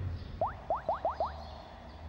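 Comedic sound effect of five quick chirps rising in pitch, one after another within about a second, over a steady low hum.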